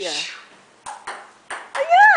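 Table tennis serve: the plastic ball clicks off the paddle and the table, about four quick, sharp clicks over the second half.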